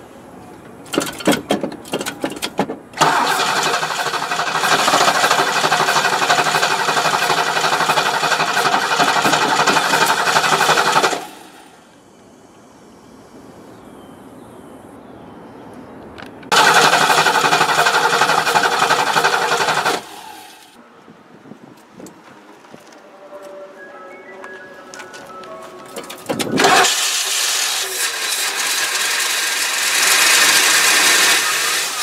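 A 1971 Ford Thunderbird V8 with a misfiring cylinder being started from an under-hood switch. A few clicks come first, then the engine sounds in three loud stretches of about eight, three and four seconds, each cutting off abruptly.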